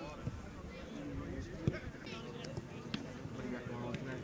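Faint, unintelligible voices of players calling out across an open soccer field, with a low rumble and a sharp knock about one and a half seconds in.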